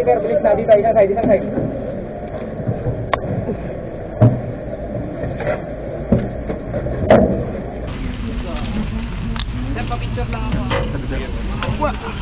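Engine and body of a KM450 military light truck running, heard from its open cargo bed: a steady low rumble with several sharp knocks and rattles. Voices of the men riding in the back chatter over it at the start.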